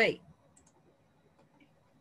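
A spoken word ends, then near silence with a few faint, short clicks.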